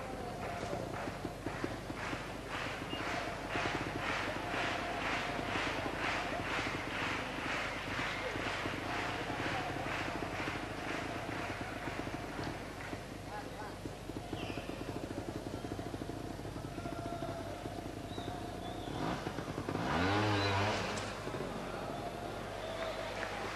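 Audience clapping in a steady rhythm, about two claps a second, fading out about halfway through over a constant crowd background. Near the end a trials motorcycle engine revs in a short rising burst, the loudest sound, as the bike hops an obstacle.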